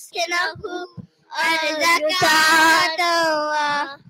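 A single high-pitched voice chanting Arabic devotional recitation melodically. A few short syllables come first, then a brief pause about a second in, then a long held note of over two seconds that wavers in pitch.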